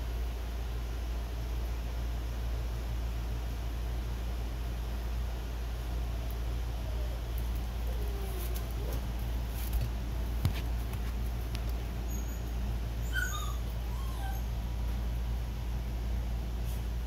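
Newborn puppies giving faint squeaks and whimpers, with a short run of high, falling squeals near the end, over a steady low hum.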